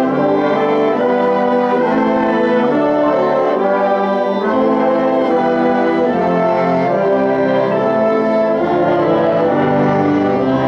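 An orchestra with strings playing a slow passage of sustained chords, each held and changing about once a second, including fermatas.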